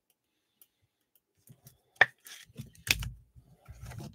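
Quiet handling of trading cards and a clear plastic card holder on a tabletop: after a near-silent start, two sharp plastic clicks about two and three seconds in, with soft thuds of pieces being set down.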